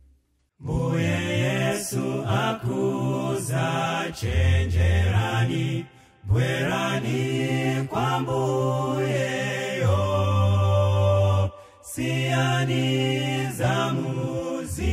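Male gospel vocal group singing in harmony over a deep bass line. It starts after a brief silence about half a second in, with short breaks near the middle and again near the end.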